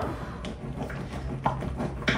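A utensil folding thick whipped cream and mascarpone in a mixing bowl, with soft scraping and two light knocks against the bowl about half a second and a second and a half in, over a steady low hum.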